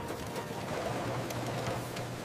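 Sheet-fed printing press running: a steady mechanical hum and rush of noise with light ticking.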